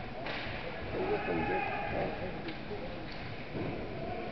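Ice hockey sticks striking a puck: one sharp crack just after the start and two lighter clacks later, over the voices of people talking in the rink.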